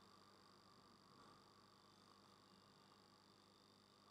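Near silence: only a faint, steady hum in the recording's background.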